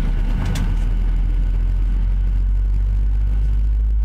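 Boeing 737-700 cabin drone heard from inside: the CFM56-7B engines running at low taxi power give a loud, steady low hum. A single click comes about half a second in.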